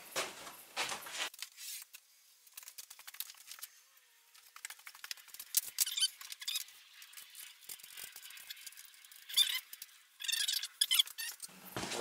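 Faint handling noises at a workbench: scattered light clicks and small squeaks, with a short busier patch of scratchy clicks near the end.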